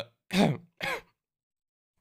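A man clearing his throat twice in quick succession, two short rasping bursts close to the microphone.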